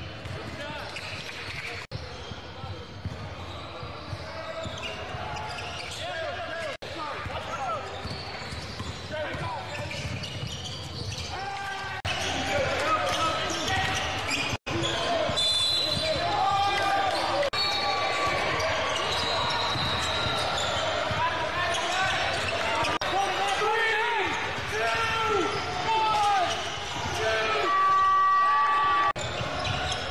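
Live game sound in a large, echoing gym: basketballs dribbling on a hardwood court with players' and spectators' shouts, in several short clips cut together. A held high tone of about a second sounds near the end.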